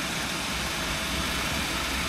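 Small 12-volt blower fans cooling a lithium battery box, running steadily: an even rush of moving air with a low hum underneath.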